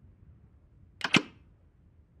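A sharp mechanical click in two quick parts about a second in, over faint background hiss: a sound effect of the Iron Man helmet switching on.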